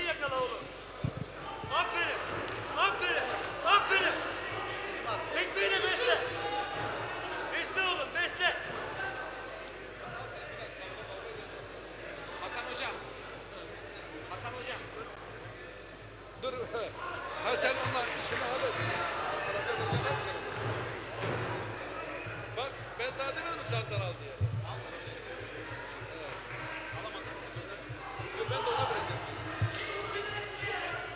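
Shouting voices of corners and onlookers over a kickboxing bout, with scattered thuds of gloved punches and kicks landing and feet on the ring canvas.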